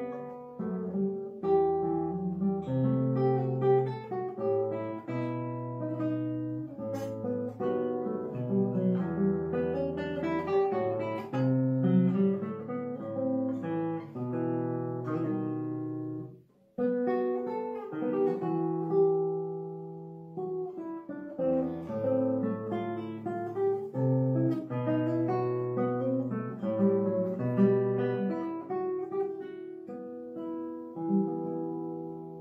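Solo nylon-string classical guitar played fingerstyle, a melody over a moving bass line. The playing stops briefly a little past halfway, then picks up again.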